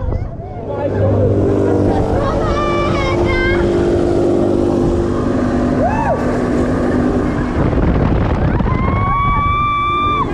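Wind rushing over the microphone and a steady hum aboard a Mondial Turbine fairground ride in motion, with riders' high cries: short yelps about three seconds in, a whoop about six seconds in, and a long held scream near the end.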